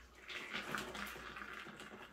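Soft watery rush of runny acrylic pouring paint flowing over a tilted canvas and dripping off its edges onto the drop sheet below. It begins about a third of a second in, with a few faint clicks.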